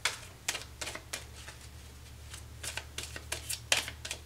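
A tarot deck being handled: a string of sharp, irregular clicks and taps of the cards, some in quick clusters, over a faint low hum.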